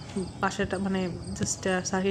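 Crickets chirping in a rapid, even pulse, with a woman's speech over them.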